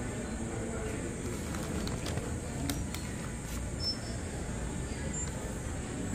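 Food court background: a steady low hum with indistinct distant voices, and a few faint light clicks in the middle.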